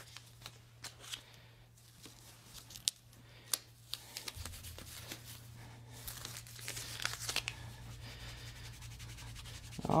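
Kinesiology tape (RockTape) being peeled from its backing paper and laid on the skin: scattered sharp crackles, then a longer stretch of tearing, crinkling noise about seven seconds in.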